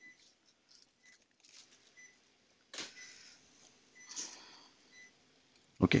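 Cath-lab patient monitor beeping faintly about once a second, in time with a heart rate of about 60. Two brief soft noises come about three and four seconds in.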